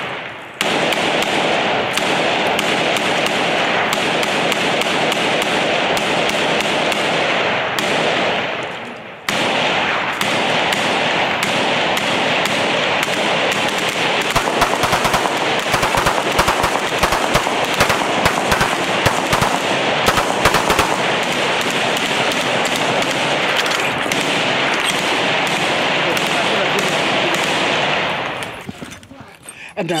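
Exchange of automatic gunfire at close range, shots overlapping into a loud continuous clatter. The sharpest and densest shots come about halfway through, with a short break about eight seconds in.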